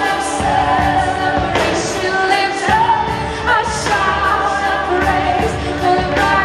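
Live worship band and singers performing an upbeat praise song, sung melody over full band accompaniment with drum hits.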